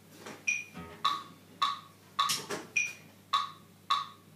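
Metronome click track ticking steadily at a little under two clicks a second, with a higher-pitched accented click on every fourth beat. It counts the band in just before the drums start.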